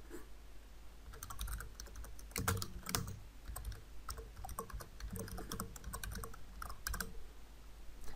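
Typing on a computer keyboard: irregular runs of keystrokes, starting about a second in, over a low steady hum.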